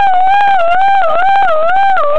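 A child imitating a police siren with their voice: one long, loud, high tone wavering up and down.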